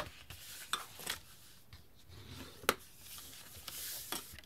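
Scored cardstock being handled and slid over a cutting mat: soft paper rubbing, with a few light taps and one sharper click about two and a half seconds in.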